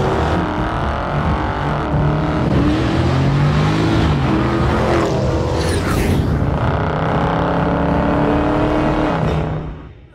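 Car engine revving, its pitch rising and falling, with a brief whoosh of a car passing about five to six seconds in; the sound fades out near the end.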